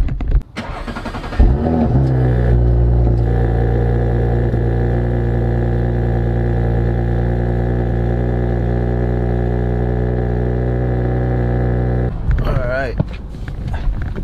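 2018 Audi S4's turbocharged 3.0-litre V6 cold-starting through the stock exhaust in dynamic mode. There is a loud start-up flare about a second and a half in, then the engine settles into a steady, even cold idle that stops abruptly near the end.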